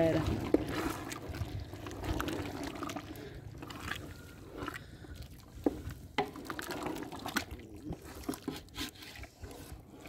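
A long spatula stirring tripe frying in ghee in a large aluminium pot: wet stirring and bubbling, with irregular clicks and knocks of the spatula against the pot.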